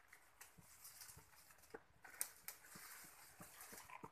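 Near silence, with faint scattered ticks and rustles and a couple of sharper clicks a little past halfway.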